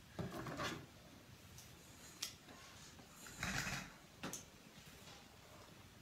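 Faint handling of hairdressing tools: a couple of soft rustles and two short sharp clicks as a comb and shears are picked up and handled.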